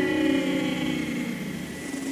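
Beatless breakdown in a Scouse house / bouncy dance track: sustained synth chords and noise slowly fading, with no drums, just before the drop.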